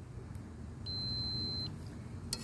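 A Commercial Electric HDSA500 digital multimeter's continuity beeper gives one steady high-pitched beep, starting about a second in and lasting under a second. The tone signals a closed circuit, or continuity, between the probes.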